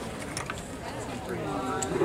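Indistinct chatter from spectators at a baseball game, with no clear words; the voices grow a little stronger in the second half.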